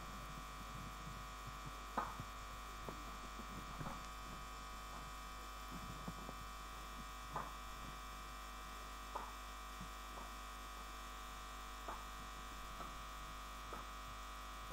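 Steady electrical mains hum, with a few faint clicks scattered through it.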